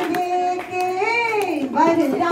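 Devotional bhajan singing to Shiva: a single voice holds one long steady note, then swells up and slides down in pitch about a second and a half in.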